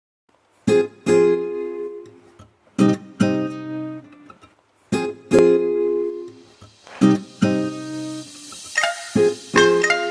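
Background music on a strummed guitar: chords struck in pairs about every two seconds, each left to ring and fade, with quicker, higher picked notes joining near the end.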